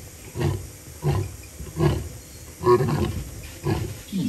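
Male lion roaring: a series of about five short roars, the gaps between them widening from about half a second to about a second.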